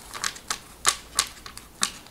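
A deck of tarot cards being shuffled by hand, the cards snapping against each other in about five sharp, irregularly spaced clicks.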